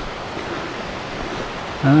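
Steady rushing of water over a set of tiny river rapids, an even hiss without breaks.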